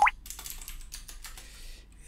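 Computer keyboard being typed on: a short run of separate key clicks, including a couple of backspaces, Tab and Enter, as a terminal command is entered.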